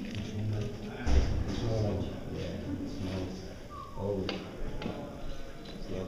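Musical instruments being handled between pieces: a few short low notes, a heavy thump about a second in and a sharp tap a little after four seconds.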